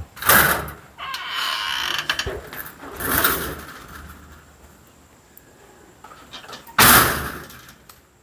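A door being moved: knocks and a scraping slide in the first three seconds, then a loud bang about seven seconds in.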